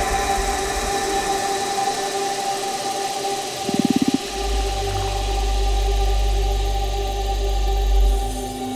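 Trailer soundtrack music: sustained held tones, a brief rapid stuttering pulse about halfway, then a deep low drone.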